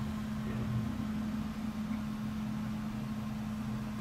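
Steady low mechanical hum with a constant drone, like a motor or fan running.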